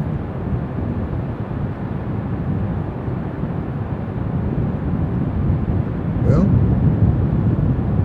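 Steady, loud wind rumble buffeting the camera's microphone on an open beach, with no distinct events; a voice says "well" near the end.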